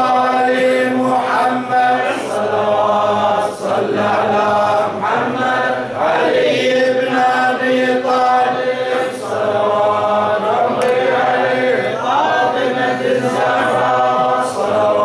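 A man's voice chanting Arabic devotional poetry unaccompanied, in long melodic lines of held notes with short breaks between phrases.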